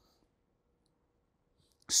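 Near silence in a pause in speech, with one faint click about a second in; a man's voice starts again at the very end.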